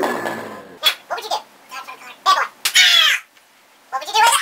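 People laughing in short high-pitched bursts, with a longer falling squeal about three seconds in.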